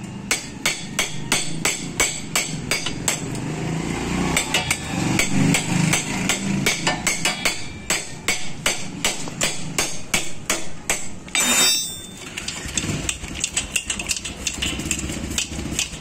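Hammer blows on metal, struck steadily at about three a second, with a short rattling clatter about two-thirds of the way in and slower, uneven strikes after it.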